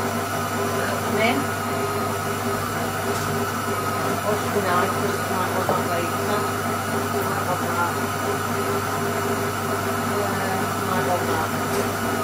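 Electric food processor running steadily with its blade mixing Madeira cake batter, with a few light clinks over it.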